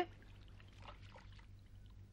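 Faint water from a garden hose pouring and splashing onto a wet paved floor, over a low steady electrical hum.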